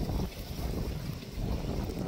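Wind blowing on the microphone: an uneven low rumble.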